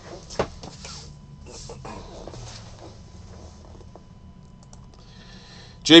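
A few scattered clicks of a computer keyboard and mouse, the sharpest about half a second in.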